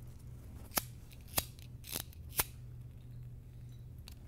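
A handheld cigarette lighter struck four times, sharp clicks a little over half a second apart, over a low steady hum.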